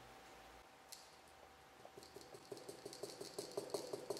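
Faint, quick light clicks, about five a second, of a brush-on liquid electrical tape applicator dabbing into a plastic tire pressure sensor housing. They start about halfway through, after near silence.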